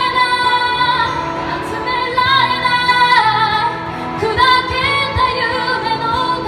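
A woman singing in Japanese in long held notes, accompanied by her own strummed acoustic guitar.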